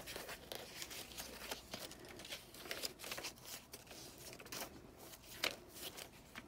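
Paper pages and inserts of a chunky handmade junk journal rustling and crinkling faintly as they are turned and handled, with scattered soft clicks and one sharper tap near the end.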